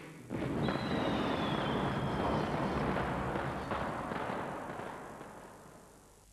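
Cartoon sound effect: a loud, noisy rumble starts suddenly about a third of a second in, with a high whistle falling in pitch over the first two seconds, then slowly dies away.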